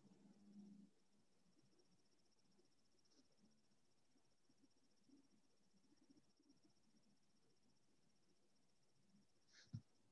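Near silence: faint room tone with a thin, steady high-pitched whine, and a single short click near the end.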